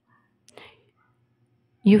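Near silence with one brief soft noise about half a second in, then a person's voice starts speaking near the end.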